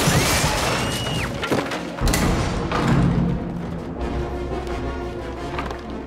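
Dramatic film score playing under heavy crashes of splintering wood as a troll's club smashes through wooden toilet stalls, with one crash at the start and another about two seconds in.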